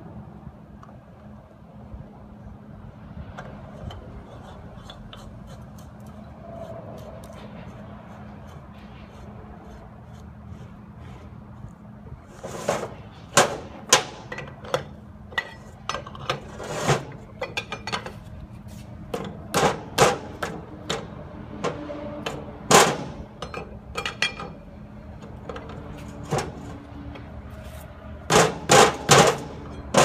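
Sharp metallic clanks and knocks of a large steel open-end wrench against the backstop nut and steel body of an oil-well rod rotator as the nut is tightened. They start about halfway through, come irregularly, and end in a quick run of four near the end, over a steady low hum.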